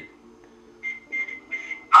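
A pause in a phone conversation, with faint steady background tones. In the second half the other caller's voice comes faintly through the smartphone's earpiece in short bursts, just before he replies.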